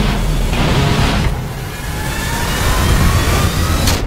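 Trailer music and sound design: a loud, rushing build with rising tones climbing over the last two and a half seconds, cut off suddenly by a sharp hit just before the picture goes black.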